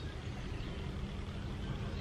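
Steady low background hum with a faint constant tone, unchanging through the pause.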